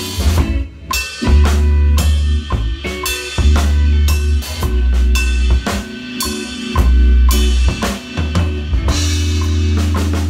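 Yamaha Recording Custom drum kit with a Tama snare and Meinl Byzance cymbals played with sticks in a steady groove of kick, snare and cymbal strikes, picked up by a phone microphone. Long low bass notes sound under the drums, from the song's backing track.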